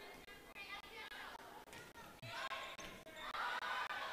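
A volleyball bouncing on a gym's hardwood floor, a dull thud about two seconds in, among faint scattered voices from players and crowd in a large, echoing gym.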